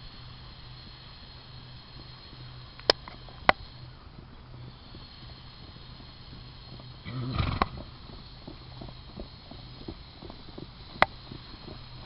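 A horse trotting on a sand arena, its hoofbeats soft and fairly regular over a steady low hum. Three sharp clicks stand out, two close together about three seconds in and one near the end, and a louder rush of noise comes about seven seconds in.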